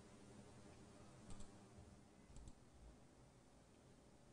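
Near silence: room tone, with a few faint, short clicks between about one and three seconds in.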